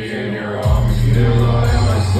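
Live rap music played loud through a concert PA: a deep bass line cuts out briefly at the start, then comes back about two-thirds of a second in with a downward slide.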